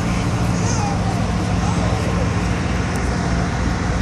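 Tour boat's engine running with a steady low drone under an even hiss, with faint voices in the background.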